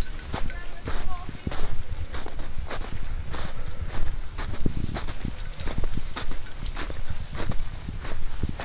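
Footsteps crunching through snow at a steady walking pace, about two steps a second.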